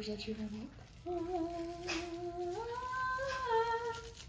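A woman humming long, steady held notes that step up to a higher pitch partway through.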